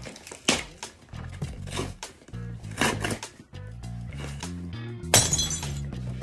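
Background music with a steady bass line, over the tearing and rustling of a mailed package being ripped open, with a loud, sharp rip near the end.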